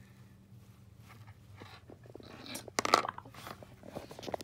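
Handling noise from a cardboard box and a metal spring fidget ring: a quiet start, then a short cluster of sharp clicks and rustles about three seconds in as the ring is set down in the box.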